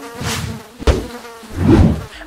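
A housefly buzzing, fading in and out and swelling louder near the end, with one sharp click just under a second in.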